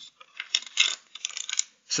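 Hard plastic body-mount parts for a Traxxas TRX4 RC truck being handled and set down on a wooden table: two short clusters of light clicks and rattles.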